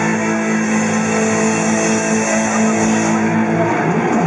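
Heavily distorted electric guitars and bass holding a long sustained chord as a black metal song ends live, with a pitch sliding down just at the end as the chord breaks off.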